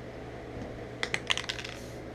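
A quick run of light, sharp clicks about a second in: small plastic Lego pieces being picked up and knocking together in the fingers.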